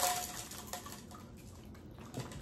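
Lucky Charms cereal shaken from its box into a plastic Ninja blender jar: a sudden rush of small pieces landing at the start that fades within half a second, then a scattered trickle of faint ticks.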